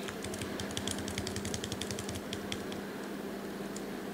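A quick, irregular run of light key clicks from typing on a computer keyboard, lasting about two and a half seconds, with a lone click near the end.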